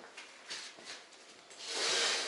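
A few light clicks, then a rubbing, scraping noise close to the microphone that swells up and peaks near the end.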